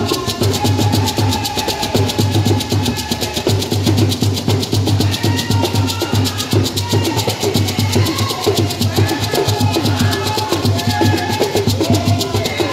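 Live drumming in a busy, even rhythm, with a woman singing over it through a microphone and loudspeakers.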